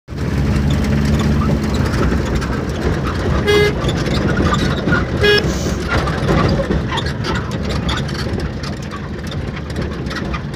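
Vehicle engine running while driving, heard from inside the cab, with two short toots of the horn about three and a half and five seconds in.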